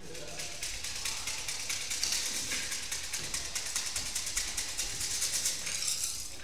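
Rapid, even rattling of fortune sticks (siam si) shaken in a cup, about six or seven clacks a second.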